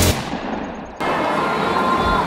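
The tail of an electronic music intro fading away over about a second with its high end cut off. It gives way abruptly to steady outdoor street noise.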